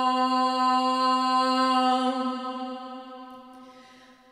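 A woman's voice holding one long wordless sung vowel at a steady pitch, a chant-like vocal toning, that fades away over the last two seconds.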